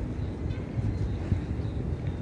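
Wind buffeting a phone's microphone outdoors: an uneven low rumble that rises and falls in gusts.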